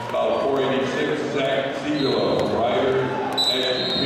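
Indistinct voices talking and calling out in a large echoing hall, with a few dull thumps.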